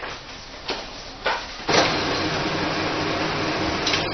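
Two light clicks, then from under two seconds in an office photocopier runs a copy with a loud, steady whir that stops at the end.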